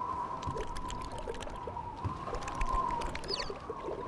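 Cartoon howling-wind sound effect: a steady, slightly wavering whistle over a low rushing noise, with scattered faint ticks.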